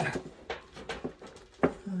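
Sharp plastic clicks and knocks of a Leviton circuit breaker being handled and worked loose in its load center by gloved hands, several irregular clicks through the two seconds.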